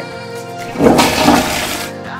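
Toilet-flush sound effect: a rush of water starting a little under a second in and lasting just over a second, over steady background music.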